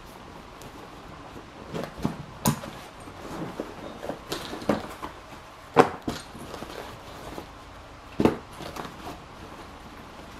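Handling of a camera messenger bag: fabric rustling and a series of sharp clicks and knocks as its flap with a metal latch is opened and the inside is handled, the loudest knocks about six and eight seconds in.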